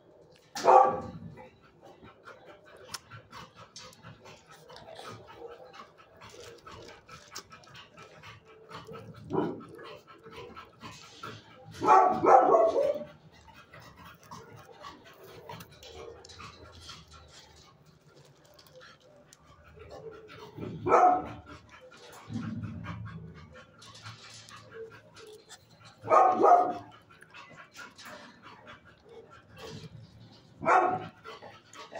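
Dog barking in single barks spaced several seconds apart, about six in all. The longest bark comes about 12 seconds in, and a lower-pitched one comes about 22 seconds in.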